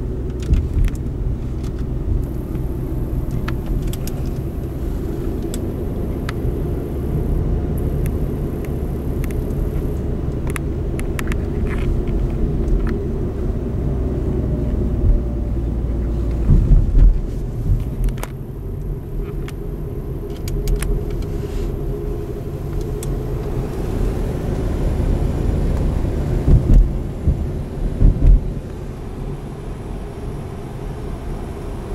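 Car driving, heard from inside the cabin: a steady low rumble of engine and road noise, with scattered light clicks and a few louder low thumps around the middle and again near the end.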